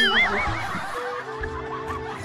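A high, wavering laugh that breaks in suddenly and fades within about half a second, over background music with held notes.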